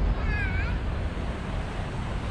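Outdoor traffic ambience, a steady low rumble with wind, broken about a quarter second in by a short, wavering high-pitched call of about half a second.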